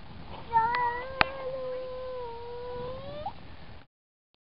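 A toddler's long, drawn-out vocal sound, held at one pitch for nearly three seconds and rising at the end, with two sharp clicks in its first second. The sound cuts off suddenly near the end.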